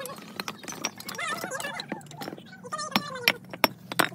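Fired clay bricks clinking and knocking against one another as they are lifted off a loose pile by hand, an irregular string of sharp clacks with the loudest a little before the end.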